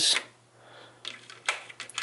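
Small metal sockets and adapters clicking against each other as they are handled in a toolbox drawer: a few light clicks in the second half, with one sharper clink about a second and a half in.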